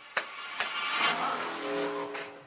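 Opening of a dance-routine music track played over the PA: sharp hits about every 0.4 seconds, then a swelling sound effect with steady low tones under it, like an engine revving up.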